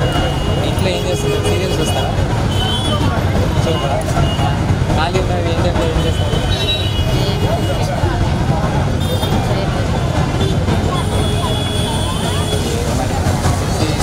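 A woman speaking Telugu into a handheld microphone over a steady low background rumble.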